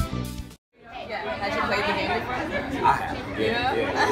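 Background music with guitar and drums cuts off about half a second in; after a brief silence, indistinct voices chatter.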